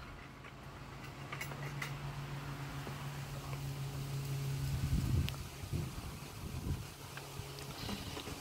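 A manual caulking gun squeezed against wood siding gives a few faint clicks over a steady low hum, with some soft handling bumps.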